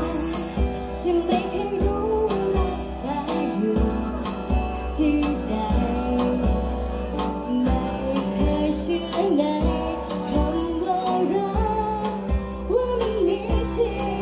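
A group of young women singing a pop song live into microphones, taking turns on the melody. Amplified instrumental accompaniment with a steady beat runs underneath.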